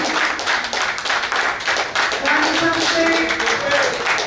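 Hand clapping from the people gathered round, a dense run of claps, with voices and background music underneath.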